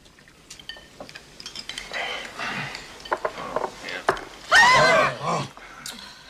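Chopsticks and ceramic bowls clicking and clinking during a meal, with noisy eating sounds. About four and a half seconds in comes a loud, short vocal noise with a wavering, swooping pitch.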